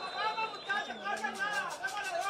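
Fast, animated speech, with voices talking over one another.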